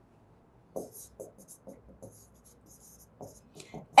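Stylus writing on an interactive touchscreen whiteboard: a quick run of soft taps and short scratchy strokes as a few words are handwritten, starting about a second in.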